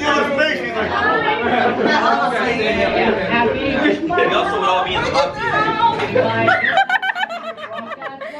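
Several people talking over one another, with some laughter; the chatter thins out about a second before the end.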